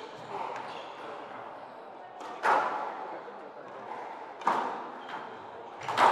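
Squash ball being struck by rackets and hitting the court walls during a rally: sharp smacks, the two loudest about two seconds apart, with smaller hits between.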